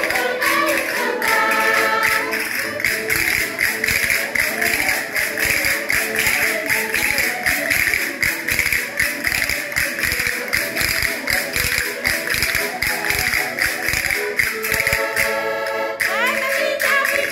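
A group of voices singing a folk song together over a steady, fast clicking beat from hand percussion.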